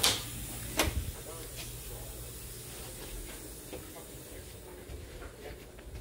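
Interior door knob turned and the latch clicking as a door is opened, with a second sharp click under a second later, then a faint steady hiss.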